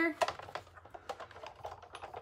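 A few light, irregular plastic clicks and taps as acrylic plates and an embossing folder are laid and pressed together on a Big Shot die-cutting machine's platform.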